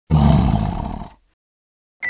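A lion roaring once, for about a second, starting abruptly and fading out.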